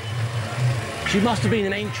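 A steady low hum under a busy, noisy hall, with a man's voice speaking briefly in the second half.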